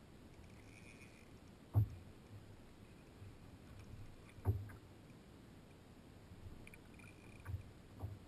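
Small waves slapping against a plastic kayak hull: three soft low thumps about three seconds apart over a faint steady background of water.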